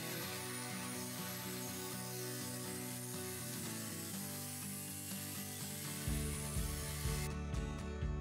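Angle grinder with an abrasive cut-off disc cutting through square steel profile tube, a steady high grinding noise that stops about seven seconds in.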